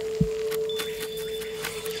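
A single steady held tone from a background music drone, with one short low thump about a quarter of a second in.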